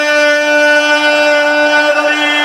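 A single long musical note held at a steady pitch, rich in overtones.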